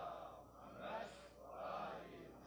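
Faint breathing picked up by a close microphone: three soft breaths within about two seconds.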